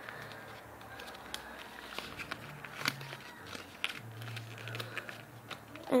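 Sheets of paper rustling and crinkling as hands fold and tuck the flaps of a paper box, with scattered light crackles of the creasing paper.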